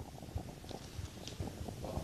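Faint low rumble with scattered soft ticks, the background noise of a live outdoor microphone between speakers.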